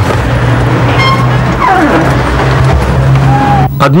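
City street traffic: car engines running with a steady low hum, and a vehicle passing with a falling pitch in the middle. A short high tone comes about a second in.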